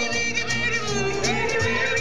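A small early-jazz band playing live, with sliding, bending melody lines over a steady beat from its rhythm section.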